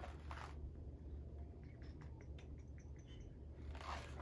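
Faint rustling and soft ticks of printed paper pages being turned and handled, over a low steady hum.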